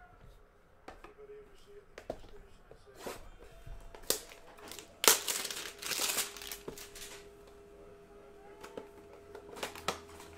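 A cardboard hanger box of trading cards being torn open by hand: handling clicks and knocks, then a loud stretch of tearing and crinkling of card and paper about five seconds in.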